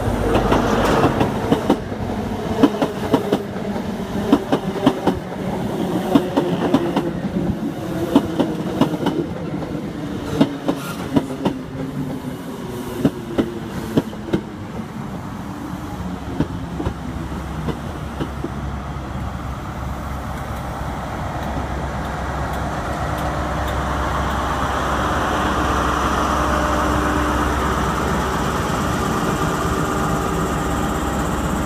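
High Speed Train running slowly into the platform: the coaches' wheels click over rail joints in a quick, uneven series through the first half. Then a steady low hum from the rear Class 43 diesel power car builds as it draws alongside.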